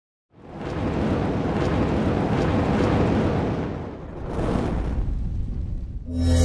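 Deep, dense rumbling sound effect of an animated logo intro, building up within the first half-second, easing briefly around four seconds and swelling again; at the very end it gives way to sustained ambient music tones.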